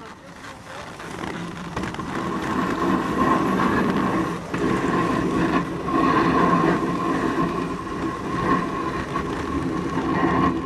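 Bobsleigh running down the ice track, its runners rumbling and scraping on the ice. The sound grows louder over the first three seconds, with a steady high-pitched whine running through it.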